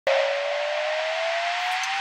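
Synthesized riser sound effect of a TV weather-segment intro: a hiss with a single tone gliding slowly upward, starting abruptly.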